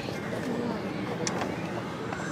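Steady outdoor background noise with faint distant voices.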